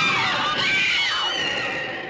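Women screaming in a horror-film scene, their high wavering cries over a dense rushing noise that starts suddenly and fades near the end.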